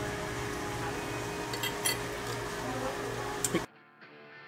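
Dining-room ambience with a steady hum and a few light clinks of forks against plates, around the middle and again near the end. The sound cuts off suddenly just before the end.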